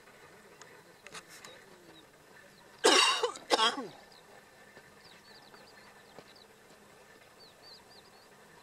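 Two short, loud vocal sounds from a person, close together about three seconds in, over a quiet outdoor background with faint high chirps later on.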